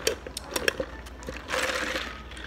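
A paper soft-drink cup handled close to the microphone: a few sharp clicks and taps in the first second, then a louder scraping rustle near the end.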